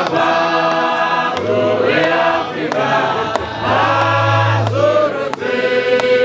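A group of men singing a hymn together in harmony, with long held notes and the words "my father" near the start. A few short, sharp clicks sound between the notes.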